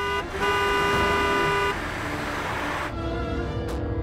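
Car horn honking at a car to make it pull over: a short toot, then one long steady blast of about a second and a half, followed by the noise of the cars driving.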